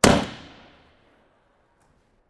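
A single gunshot from an M855 5.56 mm round fired into a rifle armor plate. It is one sharp crack, with reverberation dying away over about a second.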